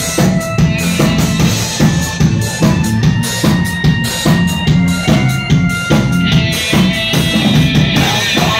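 Live circus-punk rock band playing an instrumental passage: a drum kit keeps a steady bass-drum and snare beat, with bass, electric guitar and a Kurzweil keyboard holding sustained tones. Near the end the sound grows brighter and fuller.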